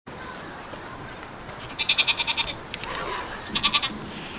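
A goat bleating twice: a high, quavering bleat lasting about half a second, then a shorter one near the end.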